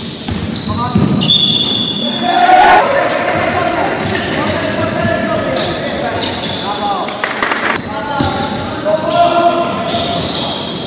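Basketball game sounds in a large, echoing gym: a ball bouncing repeatedly on the court and players' voices calling out.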